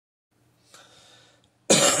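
A man clears his throat with a loud, harsh cough near the end.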